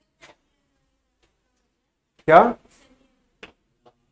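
Near silence broken by one short word spoken by a man, "kya", about two seconds in, with a few faint clicks around it.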